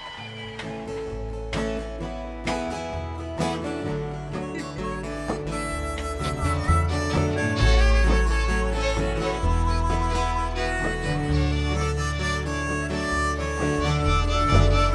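Country band playing live: an instrumental passage of strummed acoustic guitar over bass notes, with a held lead melody coming in about six seconds in.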